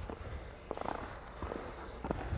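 Faint scrapes and ticks of hockey skate blades on ice as a skater glides and steps, with a cluster of them a little under a second in, over a low steady rumble of the rink.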